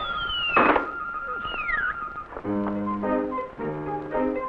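Cartoon orchestral score playing a fall gag: a held high note under two falling pitch slides, and a sudden thump about two-thirds of a second in, the loudest moment. Then the orchestra picks up again with short stepping notes a little past halfway.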